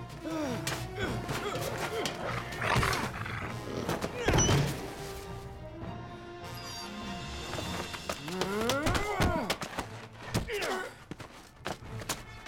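Film soundtrack music, with a heavy thud about four seconds in and wordless voice sounds such as groans and strained breaths.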